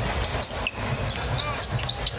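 Basketball game sound on a hardwood court: a ball bouncing and a few short high squeaks over a steady arena crowd din.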